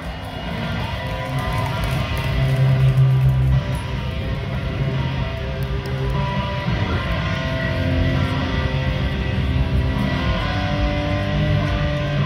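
A live rock band heard from the crowd through the festival PA, with electric guitar and bass guitar playing held chords at a steady level.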